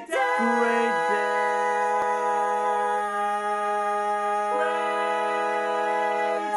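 Barbershop quartet singing a cappella, four male voices holding the long final chord of a tag on the word "day". Some voices move to new notes about a second in and again about four and a half seconds in, while a low note stays steady underneath.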